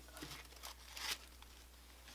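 Faint rustling and crinkling of the thin protective paper sheet taken off a new laptop's keyboard, a few soft crackles over the first second or so.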